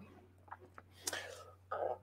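A quiet pause with a man's faint murmuring and whispering under his breath, a few soft clicks about half a second in, and a low steady hum.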